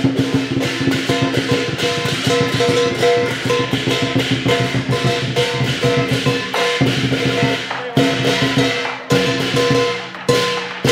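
Lion dance percussion: a drum beaten in a fast, dense roll with ringing metal percussion sustained underneath. Near the end the roll breaks into separate heavy strikes with short gaps between them.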